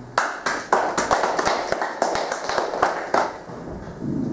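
Audience applauding: a burst of clapping that starts suddenly and dies away about three seconds in.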